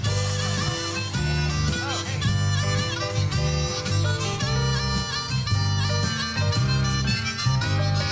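Harmonica playing an instrumental break over band backing, with a steady, rhythmic bass line underneath.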